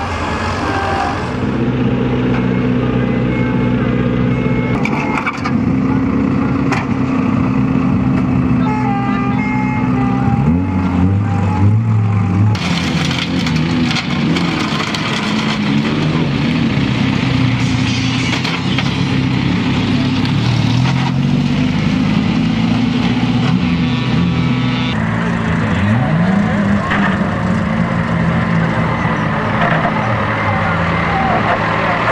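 Vehicle engines running steadily, with the diesel engine of a John Deere 6430 tractor lifting a wrecked banger car on a chain; the engine revs up briefly about ten seconds in and again near the end.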